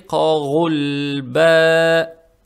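A man reciting the Quran in Arabic in a melodic chanted style. He sings a wavering, ornamented phrase, breaks briefly, then holds a long steady note.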